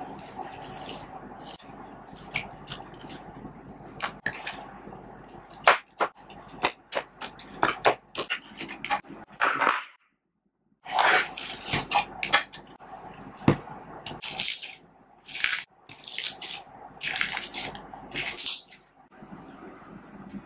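Sticky slime packed with small foam beads being squeezed, poked and stretched by hand, giving a run of crackling clicks and wet, sticky pops, with a short silent break about halfway through.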